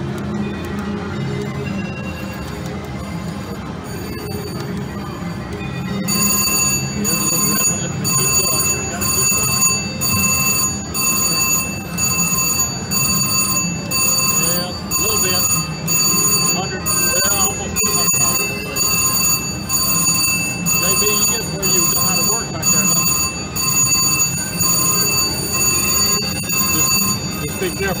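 A VGT reel slot machine ringing its electronic win bell while counting winning credits up onto the meter. The ring starts about six seconds in and pulses evenly, about one and a half times a second.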